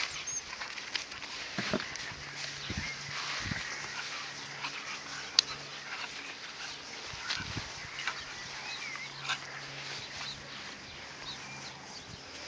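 Several puppies playing and scuffling together on grass, with rustling, pawing and brief high squeaks and whimpers. A single sharp click stands out about five and a half seconds in.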